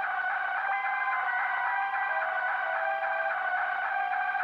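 Dark electronic dance music in a quiet passage without drums or bass: a repeating high synth figure over sustained synth tones.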